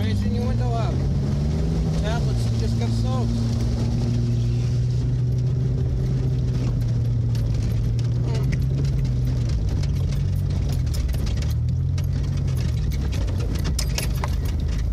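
Vehicle engine running steadily under way, heard from inside the cab, with a brief rise in engine speed about two seconds in. Scattered light clicks in the second half.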